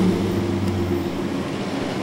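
Pickup truck engine running as the truck drives off, its steady hum fading out about a second in and leaving a steady rush of street noise.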